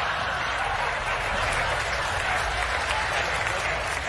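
Audience applauding steadily, a dense even clatter of many hands.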